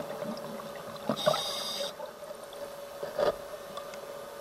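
A scuba diver breathing through a regulator, heard underwater: a hiss of air about a second in and short bubbling sounds, over a faint steady hum.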